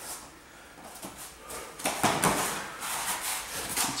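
Grapplers' feet and bodies scuffing, shuffling and rubbing on foam mats and against each other's clothing as they wrestle standing, with louder scuffs about halfway through.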